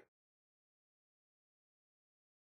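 Near silence: the sound track drops to a dead, gated silence between phrases of speech.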